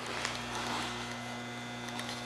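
Steady electrical mains hum: a low, unchanging tone with a few fainter higher tones above it, over light background hiss.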